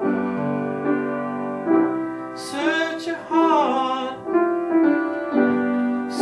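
Piano played in sustained chords with a man singing over it; a little over two seconds in he holds a long, wavering note for about a second and a half, and starts another at the very end.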